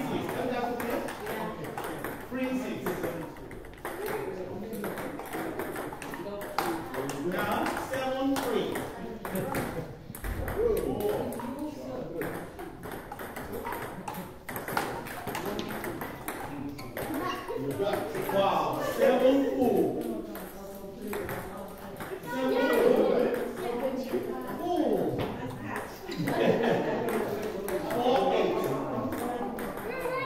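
Table tennis balls being struck by paddles and bouncing on the tables: a steady, irregular run of short, sharp pocks from several rallies going on at once.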